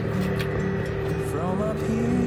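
Outdoor background of a steady mechanical hum over a low rumble, with a short voiced murmur a little past halfway.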